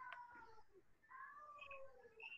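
Two faint, drawn-out calls from an animal in the background, each slightly falling in pitch, the second starting about a second in.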